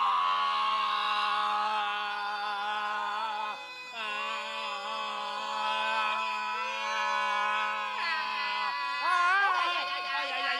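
Three men singing a cappella in close harmony: long held chords over a sustained low bass note, with a short break about three and a half seconds in and one voice sliding up and down near the end.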